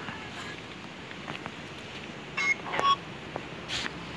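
Short electronic beeps from a smartphone app: a high tone, then a lower one about half a second later, over a faint steady hiss.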